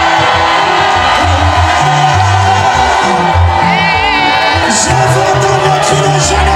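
Gospel choir singing loudly over a band with a rhythmic bass line; one voice holds a high wavering note about four seconds in.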